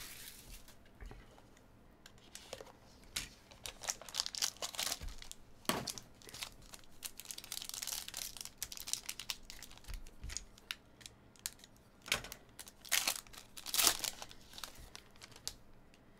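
Trading-card box and its foil pack being handled and opened by hand: irregular crinkling and tearing of foil and wrapping, with a few sharp crackles near the end.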